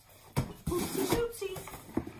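Cardboard shipping box being opened by hand, its flaps pulled back: a sharp knock about a third of a second in, then a second of cardboard rustling and scraping.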